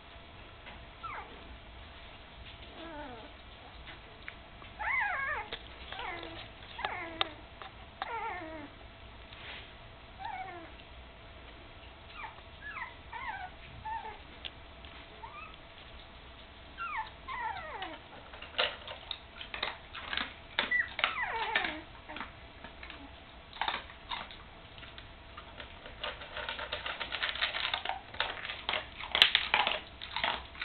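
Puppies nearly three weeks old whimpering: many short, high squeaks that slide down in pitch, coming in scattered runs. Sharp clicks follow in the second half, and a rustling noise near the end.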